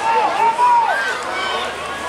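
Young girls' voices shouting calls during rugby play: about three high, drawn-out calls, each falling off at the end, over background chatter.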